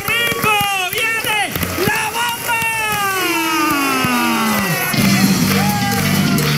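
Several voices yelling excitedly, one long call sliding down in pitch, then about five seconds in a band with guitar and drums starts playing.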